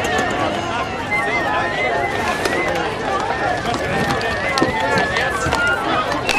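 Many voices of a football team huddle speaking at once, overlapping so that no single speaker stands out.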